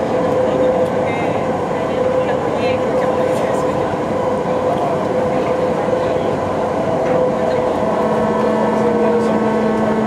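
BART train running along the line, heard from inside the car: a steady rumble of wheels on rail with a constant whine from the propulsion system. About eight seconds in, a new lower tone joins, and the whine begins to drop in pitch.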